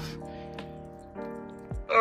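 Background music with sustained, steady notes, and a few faint clicks over it.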